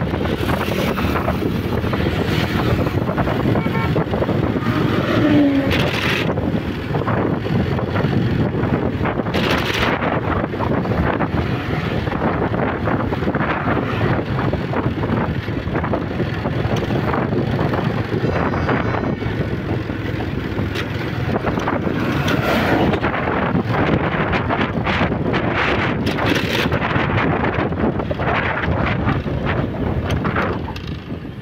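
Wind buffeting the microphone of a moving motorbike in steady gusts, with the bike's engine and tyre noise running underneath.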